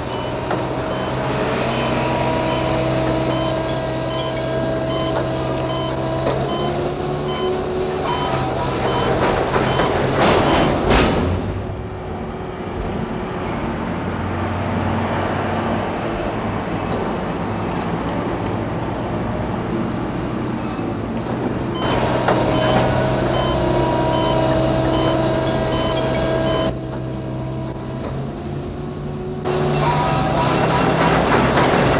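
Container-port machinery running: a steady diesel engine drone from trucks and cranes, with a short repeating high warning beep. A louder rushing surge comes about ten seconds in.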